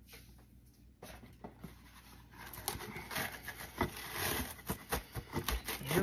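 Plastic cling wrap crackling and rustling as it is handled and pulled from its box, starting a couple of seconds in, with a couple of dull knocks.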